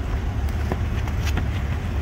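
Steady low rumble of an idling vehicle engine, with a few faint clicks.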